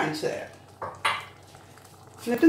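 A few sharp clacks and scrapes of a plastic spatula against a nonstick frying pan holding thick dal, mostly in the first second, then quiet.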